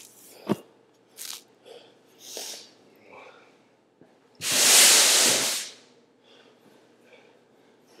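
A man breathing hard while exercising: a sharp knock about half a second in, a few short puffs of breath, then one loud, long rush of exhaled breath close to the microphone about halfway through.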